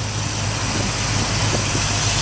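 A 1955 Chevrolet Bel Air's 327 small-block V8 idling with a steady low hum.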